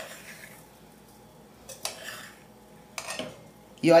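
A spoon stirring a dry cassava-flour farofa in an aluminium pan: soft scraping with a few separate knocks against the pan, one at the start, then others about two and three seconds in.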